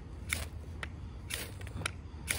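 Carbon-steel knife spine scraped down a ferrocerium rod to throw sparks: four short, sharp rasps about half a second apart.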